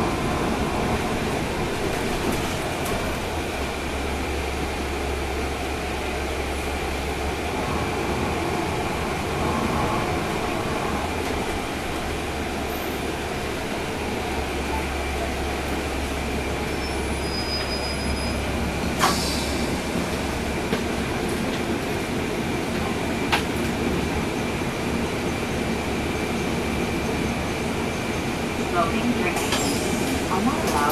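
Inside a 2012 NABI 40-SFW transit bus on the move, heard from the rear seats: its rear-mounted Cummins ISL9 diesel running under steady cabin and road noise, with a thin steady whine. The low drone swells twice as the bus pulls through traffic, and a few sharp rattles or knocks sound near the middle.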